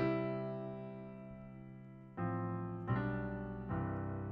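A piano plays a slow ballad intro in two hands. A chord rings and slowly fades for about two seconds, then new chords with low bass notes are struck about two, three and four seconds in.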